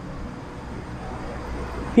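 Low, steady background rumble in a pause between a man's spoken phrases, swelling slightly partway through; his voice comes back right at the end.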